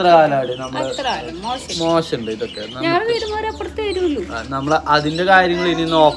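A man and a woman talking, with continuous conversational speech.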